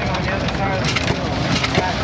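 Belt-driven threshing machine running under load as wheat bundles are fed in: a steady, dense clattering rumble. People are talking in the background.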